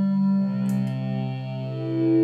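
Sustained, synth-like drone tones from a Line 6 Helix's 3 Note Generator block fed into a long delay, played with no guitar. Held notes overlap: a new lower note comes in about half a second in and a higher one near the end. Two quick clicks of the Helix footswitches being pressed come just before a second in.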